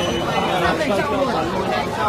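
Several people chattering and talking over one another.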